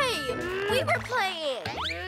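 Wordless cartoon-character cries and exclamations, swooping up and down in pitch, as the baby character is knocked over by the puppy, over children's background music.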